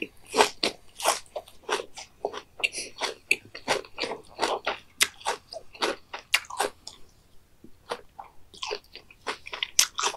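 Close-miked crunchy chewing of raw beef omasum (cheonyeop): a quick run of crisp crunches about three a second, thinning out over the last few seconds.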